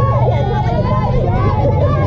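Several high-pitched young voices shouting and cheering at once, with drawn-out, overlapping calls, over a steady low rumble.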